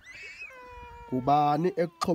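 A faint, high, thin tone sliding slightly down near the start, then a man's voice in drawn-out, wavering vowel sounds without clear words from about halfway in.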